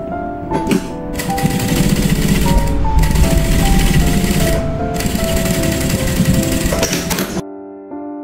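JUKI industrial sewing machine running at speed, stitching along the edge of quilted fabric. It starts about a second in and cuts off abruptly near the end, over background music.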